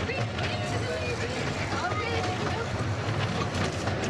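Miniature railway train running along the track, heard from an open passenger carriage: a steady low rumble from the locomotive and the wheels on the rails.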